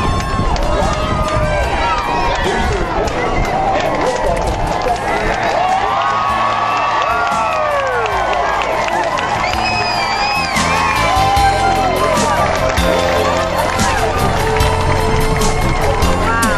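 A large crowd of spectators cheering, whooping and shouting as the space shuttle lifts off, many voices rising and falling at once, with a shrill high cry about ten seconds in.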